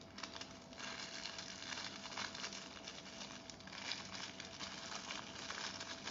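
Small clear plastic bag crinkling as fingers handle it: a dense run of small crackles that starts about a second in and lasts several seconds.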